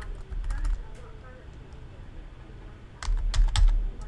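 Computer keyboard keys clicking: a few scattered keystrokes in the first second, then a quick run of about half a dozen about three seconds in, over a steady low hum.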